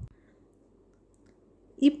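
Near silence, only faint room hiss, until a woman's voice starts speaking near the end.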